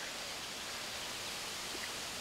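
Steady, low outdoor background noise: an even hiss with no distinct events.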